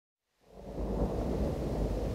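A low, noisy rumble fading in from silence about half a second in and then holding steady: the opening rumble of a song's intro.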